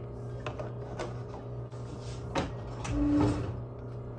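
Household objects being handled in a kitchen: a few light clicks and knocks over a steady low hum, with a louder brief clatter about three seconds in.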